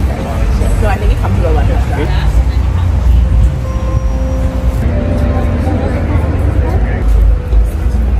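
Street ambience with a heavy, unsteady low rumble of traffic, and indistinct voices of people nearby.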